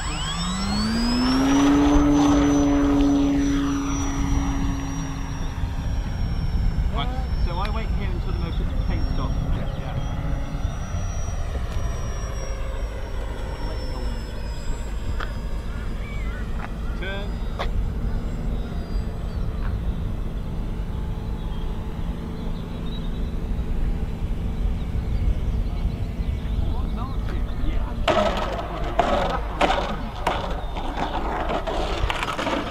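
Radio-controlled model aircraft's electric motor and propeller spinning up to full power for take-off: a rising whine that holds steady, then fades as the plane climbs away. Near the end, a rattling clatter as the plane touches down and rolls on the concrete runway.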